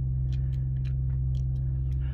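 A steady low hum, like a running motor or generator, with a few faint light ticks over it.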